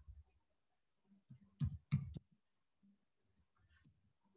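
A few faint computer keyboard keystrokes, clustered about one and a half to two seconds in, with quiet room tone around them.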